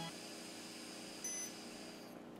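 Breath blown steadily into an AlcoHAWK Slim Ultra handheld breathalyzer, with a faint steady high tone, and one short electronic beep from the device a little past halfway.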